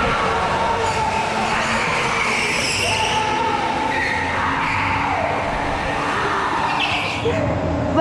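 Indoor go-karts racing through a turn on a concrete track: their motors whine steadily, with the pitch sliding down and back up about halfway through as karts pass, over a constant rush of tyre and motor noise.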